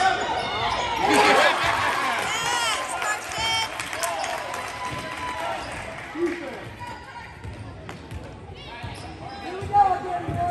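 A basketball bouncing on a gym's hardwood floor during play, amid the voices of players and spectators echoing in the hall. The voices are busiest in the first few seconds.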